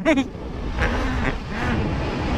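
Motorbike running at road speed while being ridden, with a steady low wind and road rumble on the microphone.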